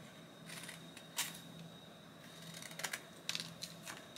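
Faint handling of paper and cut-out stamps on a desk: light rustling with a few small clicks and taps, one about a second in and several near the end, over a low steady background hum.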